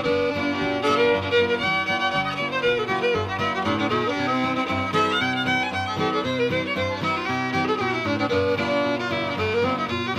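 Old-time fiddle tune in the key of C, played on a solo fiddle with guitar accompaniment. It has a busy, continuous melody over a steady, stepping low part.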